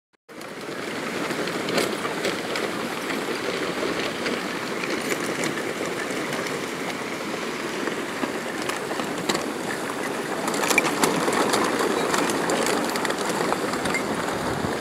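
Muddy river water rushing steadily past the bank, with occasional light clicks, growing slightly louder near the end.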